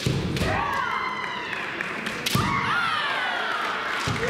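Kendo fencers' kiai: two long, drawn-out shouts that slide in pitch, one starting about half a second in and another just past the middle. Sharp thuds come at the start and again about two seconds in.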